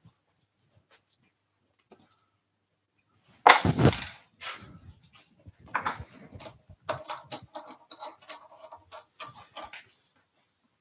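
Workshop handling sounds: a loud knock about three and a half seconds in, then scattered clicks and rubbing as a wooden piece is handled and pressed into the plywood jaw plates of a lathe chuck.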